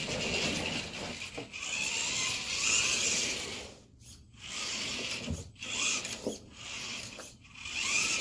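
Electric motor and gear drivetrain of the GMade R1 rock buggy RC crawler whining while it drives. The whine stops and starts three times as the throttle is let off and picked up again.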